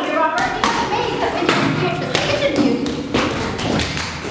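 A series of irregular thumps and taps from actors moving about a stage, their steps and bumps mixed with actors' voices.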